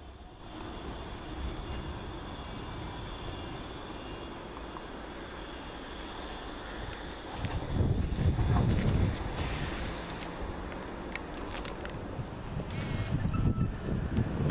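Manchester Metrolink M5000 trams running on the line: a steady rumble as one tram moves away and another approaches. A louder low rumble swells about eight seconds in.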